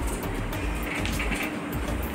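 Soft background music with a faint steady beat, over a low rumble.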